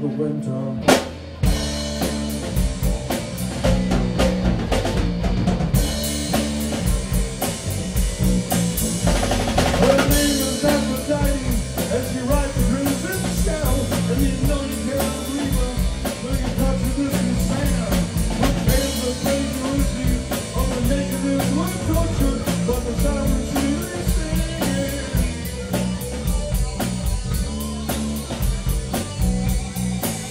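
Live rock band playing an instrumental passage on electric guitar, bass guitar and drum kit. A held chord breaks off at a sharp drum hit about a second in, then the full band plays on over a steady drum beat.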